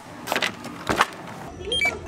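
A couple of footsteps in sneakers on a wooden floor. About one and a half seconds in the sound changes to the low hum of a store checkout, with a few short beeps from a handheld barcode scanner.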